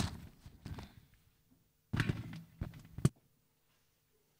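Handling noise from a handheld microphone being set down on a glass lectern: a few bumps and rubs, the last a sharp knock about three seconds in, after which the sound drops out.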